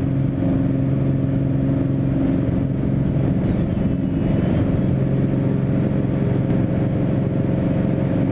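Single-engine piston airplane's engine and propeller at takeoff power: a steady, loud drone with a low hum, through the takeoff roll and initial climb.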